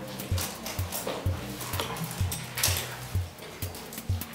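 Background music with a steady beat: a low thump a little more than twice a second, with crisp high percussion between the beats.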